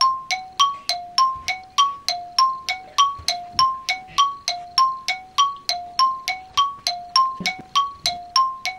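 A countdown-timer sound effect: short, ringing electronic blips alternating between two pitches like a tick-tock, about three to four a second, evenly paced and unbroken.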